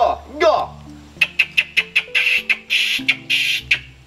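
A man's call to capuchin monkeys: a quick run of sharp mouth clicks, then two long, harsh hissing calls, made to summon the troop. Background music plays throughout.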